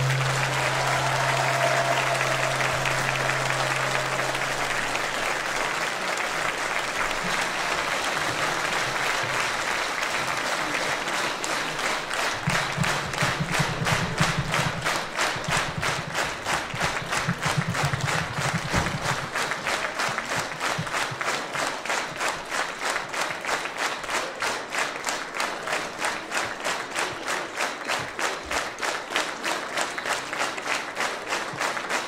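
Audience applauding, with the last held note of the music fading out in the first few seconds. About two-thirds of the way through, the applause settles into steady rhythmic clapping in unison, roughly three claps a second.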